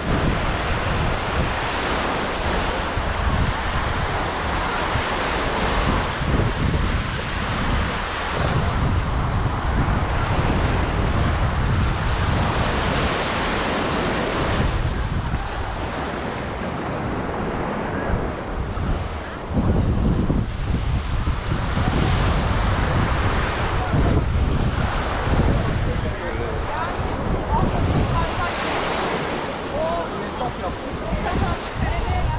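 Surf washing onto a beach, with wind buffeting the microphone in gusts that give a shifting low rumble.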